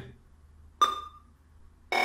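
Impulse winding surge tester giving two short clicks, each with a brief ringing electronic tone, about a second apart, as a test runs on a coil with shorted turns. The second comes as the tester flags the coil as FAIL.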